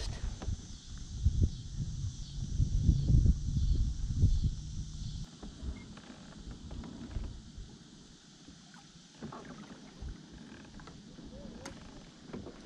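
Low rumbling and knocking from a fishing kayak and its gear for about the first five seconds, stopping suddenly, then only faint small knocks on the hull.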